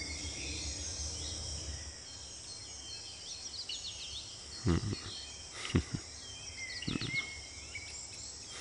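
Outdoor ambience of insects droning steadily at a high pitch, with birds chirping now and then. A few short soft knocks come in a little past halfway.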